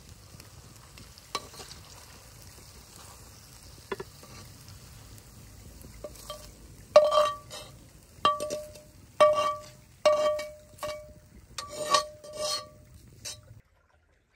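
A metal knife blade scraping pasta out of a metal frying pan onto a ceramic plate: a faint steady hiss with a few light clicks, then, about halfway through, a run of around eight sharp clinks and scrapes, each ringing briefly. It cuts off just before the end.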